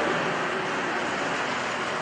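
Steady, even background noise like a hiss or rushing, with no voice; the kind of room noise a fan or air conditioner makes.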